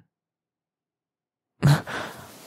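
Silence, then about one and a half seconds in a man's short voiced breath that trails off into a breathy sigh.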